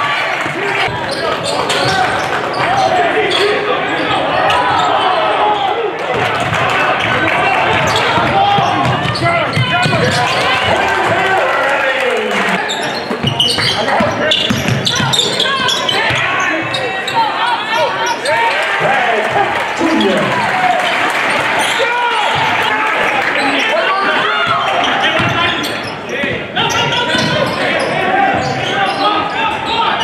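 Basketball being dribbled on a gym's hardwood court, with players and coaches calling out in the echoing gym.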